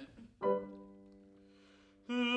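A piano chord struck once about half a second in and left to ring, fading away.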